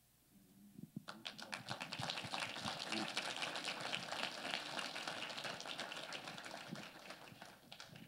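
Congregation applauding, a dense patter of many hands clapping that starts about a second in and dies away near the end.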